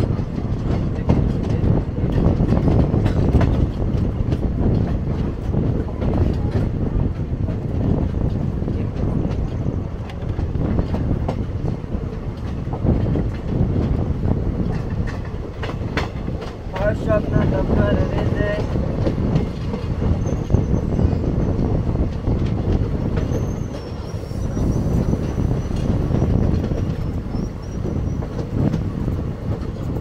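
Passenger train running along the track: a steady rumble with a continuous clatter of wheels clicking over rail joints.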